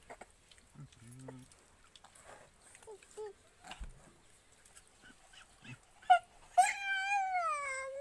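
A dog whining: one long, high call that slowly falls in pitch, starting about six and a half seconds in, after a few seconds of faint clicks.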